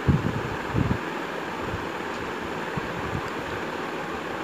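Steady rushing hiss of kitchen background noise, with a couple of soft low thumps in the first second.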